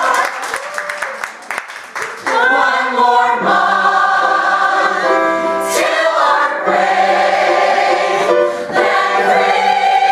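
A large mixed ensemble of musical-theatre singers in full-voiced choral harmony. After a quieter, choppy couple of seconds, the voices swell up together and hold sustained chords.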